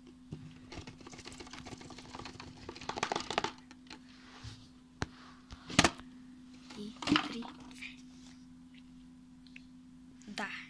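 Cardboard box of a gaming mouse being worked open by hand: a few seconds of cardboard sliding and scraping, then several sharp knocks, the loudest about six seconds in.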